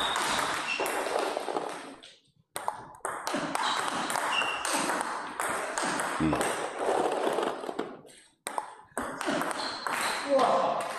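Table tennis rally: a plastic ball is struck back and forth in quick succession, with sharp clicks off the rubber bats and the table and a steady murmur behind. The sound drops out twice, about two and eight seconds in.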